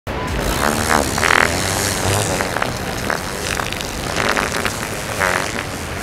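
Fart sound effects from a prank device, in short pitched bursts, over steady street traffic noise.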